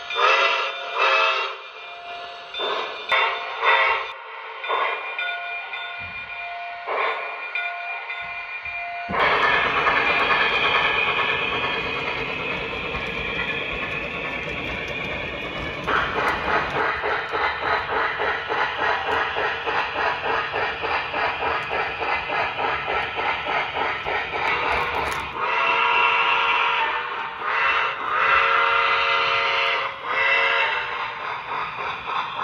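O-scale model steam locomotive's onboard digital sound: short repeated tones and steam effects for the first several seconds, then running sounds with steady chuffing at about three to four beats a second. Several whistle blasts sound near the end.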